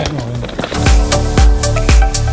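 Electronic background music. The beat comes in about a second in, with a deep kick drum about twice a second under crisp hi-hat ticks, after a short falling sweep at the start.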